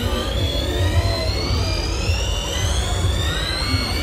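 Fairground ride starting up: a whine of several tones climbing steadily in pitch, over deep bass from the ride's sound system.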